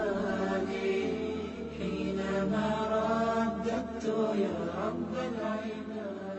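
Melodic vocal chanting with long held notes over a low steady drone, with no speech.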